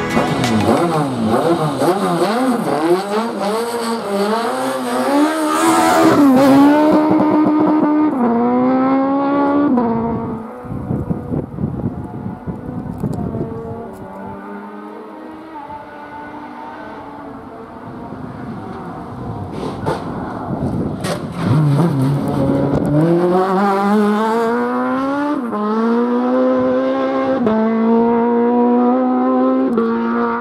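Autobianchi A112 race car's small four-cylinder engine revving hard at full throttle, its pitch climbing through each gear with several quick upshifts. It drops quieter and lower for a stretch in the middle, then comes back with more hard acceleration and upshifts near the end.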